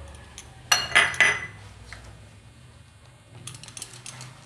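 Metal spoon knocking and scraping against a bowl while stirring a thick batter: three loud ringing clinks about a second in, then a run of quick light taps near the end.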